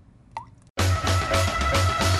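A single water drop plops, then less than a second in, loud music cuts in abruptly with a steady bass beat.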